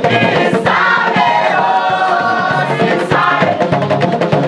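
A group of voices singing a song together in chorus, over the steady beat and low bass notes of a bamboo band.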